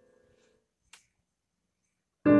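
Near silence in a pause of slow piano music: the last of a digital piano chord dies away early on, and one faint click comes about halfway through.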